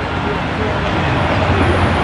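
Steady city traffic noise: a continuous low rumble of road vehicles, growing slightly louder toward the end.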